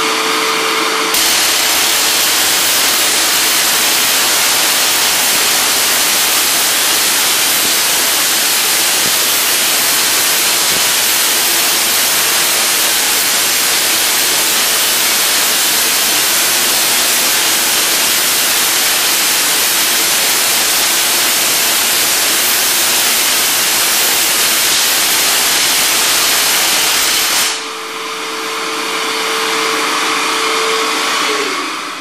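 Spark-gap Tesla coil, run from a 60 mA 12 kV neon sign transformer, firing at full power: a loud, steady rasping buzz of the spark gap and crackling arcs off the toroid. It starts about a second in and cuts off suddenly near the end, leaving a steady hum.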